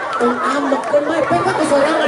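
A man's voice talking over a public-address system, with the chatter of a crowd.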